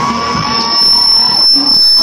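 A loud, steady, high-pitched electronic tone like an alarm, over crowd noise, getting louder in the second half.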